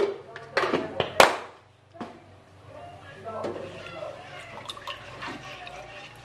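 A few sharp knocks of a utensil against a nonstick wok in the first second or so. Then softer scraping and liquid sloshing as a spatula stirs the thin bacem seasoning liquid.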